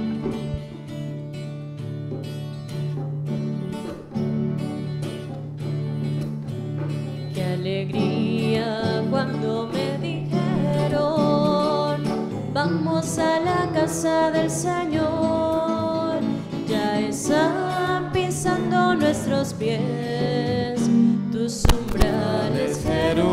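Church hymn music played on a keyboard: a sustained instrumental introduction, with a melody line entering about eight seconds in and the music growing fuller.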